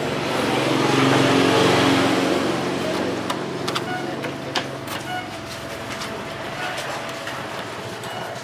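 A motor vehicle passes, its engine sound swelling over the first second or two and fading away. Scattered light clicks follow from hands handling a motorcycle's plastic fairing and wiring.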